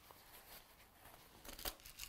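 Very faint handling of cotton fabric, mostly near silence, with a few brief soft rustles near the end.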